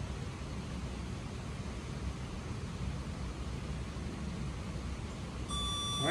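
Steady low background hum, then near the end a single electronic timer beep: one steady high tone lasting about a second, marking the end of a 15-second hold.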